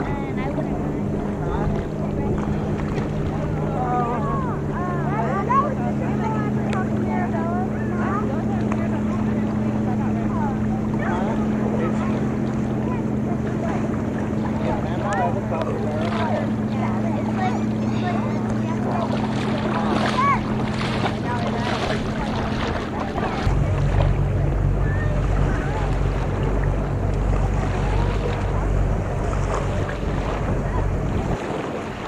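A steady low engine hum drones on, with faint distant voices over lapping water. A little past two-thirds of the way through, the hum gives way to wind rumbling on the microphone.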